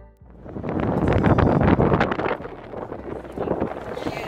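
Wind buffeting the microphone over outdoor street ambience, an uneven gusty rush that flickers rapidly, after background music cuts out at the very start.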